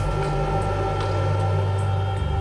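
Crane winch drum winding steel wire rope: a steady low mechanical hum with a few held tones above it.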